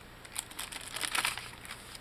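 Paper rustling and crinkling as a page of a handmade tea-dyed journal is turned by hand: a brief rustle about half a second in and a longer one about a second in.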